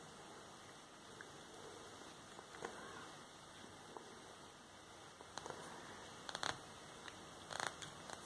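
Small pliers squeezing a metal crimp bead onto a cord end: a few faint clicks, most in the second half, over a low steady hiss.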